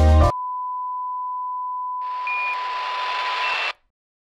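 The music cuts off and a steady test-tone beep of the kind played with TV colour bars sounds for about three seconds. About two seconds in, a hiss of static joins it with two short higher beeps, then everything cuts off abruptly. It is an edited loss-of-signal effect.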